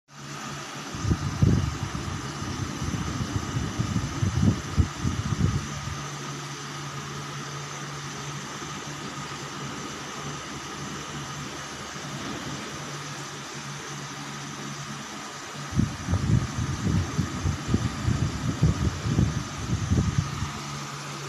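Steady mechanical hum with a few fixed tones, joined by irregular low rumbling bumps from about one to six seconds in and again from about sixteen seconds in.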